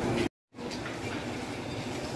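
Steady background noise of a busy shopping-mall floor, broken once near the start by a moment of dead silence where the recording is cut.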